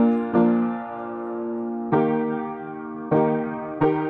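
Background piano music: slow single chords and notes, each struck and left to ring and fade, with a longer held note in the middle.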